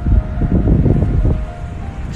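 Wind buffeting the microphone in gusts, heard as a low rumble, with quiet background music underneath.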